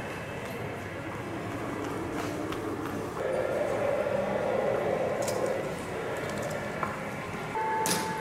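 Indoor airport terminal hubbub: indistinct voices and general background noise of a busy hall, with a slight swell in the middle.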